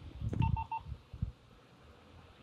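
Three short, quick electronic beeps in a row, with dull low thumps of handling, the loudest as the beeps begin and another about a second in.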